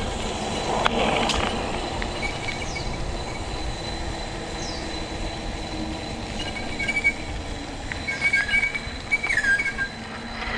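Mountain bike rolling along an asphalt path: steady tyre and wind rumble, a sharp knock about a second in, and several short high-pitched squeals near the end.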